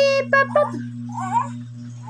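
A toddler's high-pitched voice: a quick string of short squealing calls, then a longer wavering call about a second in, sounding rather like a cat's meow.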